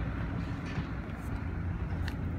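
Steady low outdoor rumble on an open construction site, with no distinct event.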